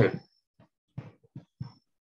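Speech only: a man's voice finishing a short spoken phrase, then a few brief, fainter vocal sounds with pauses between them.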